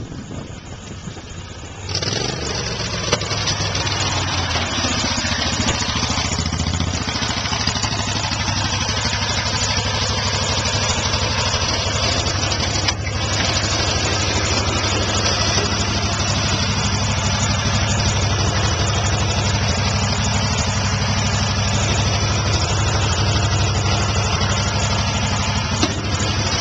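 Gas golf cart engine running steadily up close, loud and even from about two seconds in.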